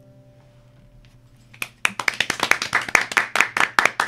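The last chord of two acoustic guitars rings out and fades away. About a second and a half in, hand clapping starts and carries on.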